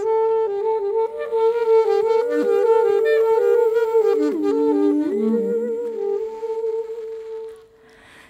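Instrumental music with sustained wind-instrument tones. One note is held steady while a second line bends and slides below it. Near the end the held note carries on alone and fades.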